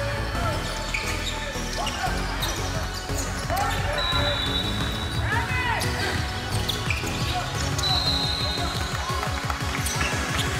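Basketball game play on a hardwood gym floor: sneakers squeaking and a basketball bouncing as it is dribbled, over background music and voices in the gym.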